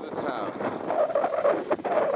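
Indistinct voices talking, with no clear words.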